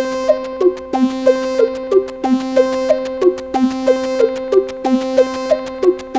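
Eurorack modular synthesizer patch playing a clocked, sequenced pattern: short pitched blips about three a second, each with a quick downward dip in pitch at its start, over a steady sustained tone. The timing comes from an AniModule TikTok clock divider/multiplier.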